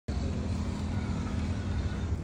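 A steady low mechanical rumble with a constant hum, unchanging throughout.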